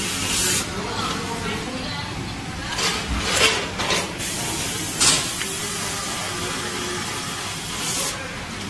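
Shredded-cheese packing line, a multihead weigher feeding a vertical form-fill-seal bagger, running with a steady machine noise. Several short, sharp hisses break through it, a cluster around three to four seconds in and another at five seconds.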